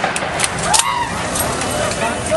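Busy street noise: people's voices and vehicles, with two short sharp cracks, the louder about three-quarters of a second in.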